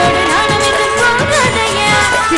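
A woman singing a film-style song, live with a stage orchestra accompanying her on keyboard and percussion.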